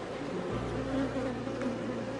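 Honeybees buzzing steadily on a brood frame lifted out of the hive during an artificial hive split. A low steady hum comes in about half a second in.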